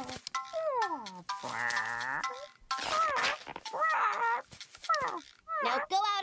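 Cartoon soundtrack: a character's swooping, sing-song vocal sounds without words, over light music. About a second and a half in comes a drawn-out buzzy tone.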